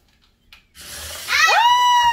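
A child's high-pitched scream starting about halfway in: it rises, then holds for nearly a second. A brief rustling comes just before it.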